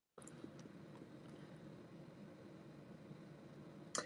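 Near silence: faint room tone and hiss, with a tiny click about half a second in and a short blip at the very end.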